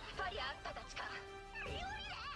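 Anime soundtrack playing quietly: high-pitched Japanese dialogue over background music.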